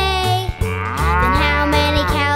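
A cow's moo sound effect, one long call starting about half a second in, over the children's song backing music with a steady bass.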